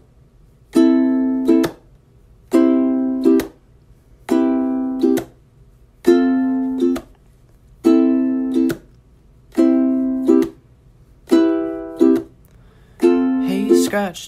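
Music: a strummed string instrument playing one chord figure, a long strum followed by a quick second stroke, repeated about every 1.7 seconds with near-silent gaps between.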